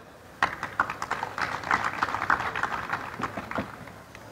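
Audience applauding: a dense patter of hand claps that starts about half a second in and dies away near the end.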